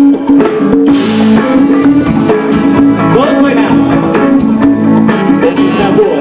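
Live band music with electric guitar to the fore.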